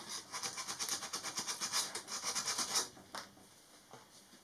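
Wooden kit part being hand-sanded along its edge with sandpaper: quick back-and-forth strokes that stop about three seconds in.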